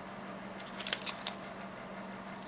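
Faint crinkling and a few soft ticks of waxy backing paper being peeled off a sculpting nail form sticker, over a steady low hum.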